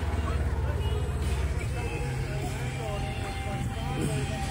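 Side-by-side UTV engine running with a steady low rumble, with a song with a singing voice playing faintly over it.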